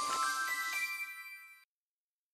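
A short electronic end-card jingle: bright chime-like notes step upward one after another and ring on together, fading, then cut off suddenly about one and a half seconds in.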